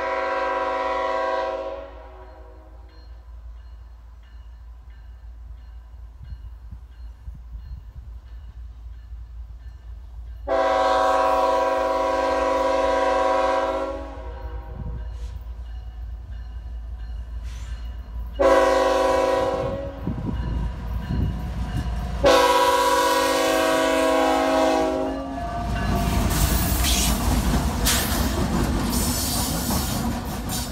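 Two CSX diesel locomotives running light sound their multi-tone air horn in the standard grade-crossing pattern of long, long, short, long. After the last blast the lead locomotive reaches the crossing, with loud engine rumble and wheel noise.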